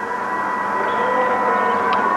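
Steady hiss with a thin, constant high whine: the background noise of the recording between spoken phrases.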